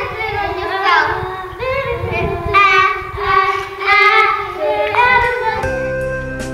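A group of children singing together, their voices rising and falling through the song. Near the end it gives way to soft plucked-guitar music.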